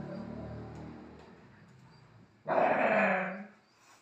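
A dog lets out a loud, grumbling, Chewbacca-like groan about a second long, starting midway through, in protest at being moved while asleep.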